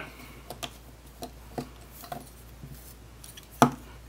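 Hard plastic parts of a FansProject Tailclub transforming-robot toy clicking and tapping lightly as a small mini figure is slotted into its chest, with one sharper click near the end.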